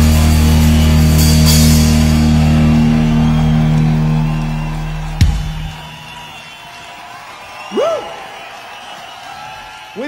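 Rock band with electric guitars and drum kit holding the final chord of a song, ended by a single sharp hit about five seconds in, after which the chord rings away. A short rising-and-falling cry is heard near eight seconds.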